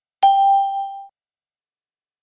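A single bell-like ding chime sound effect, struck once and dying away in under a second. It signals that the quiz countdown has run out and the answer is revealed.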